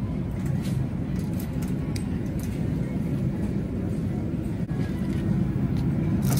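Steady low rumble of a metal shopping cart being pushed across a store floor.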